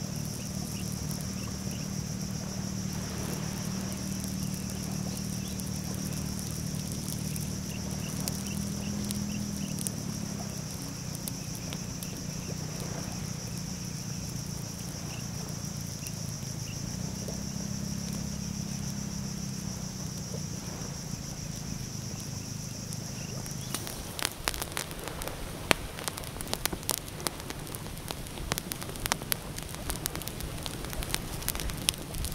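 Dusk ambience with insects droning at a steady high pitch over a low hum. About three-quarters of the way in it gives way to a small stick campfire crackling and popping with sharp snaps.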